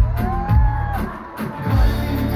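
Live pop concert music over a large PA, with heavy bass hits at the start, about half a second in and near the end. A rising, then held tone sounds over them for about the first second.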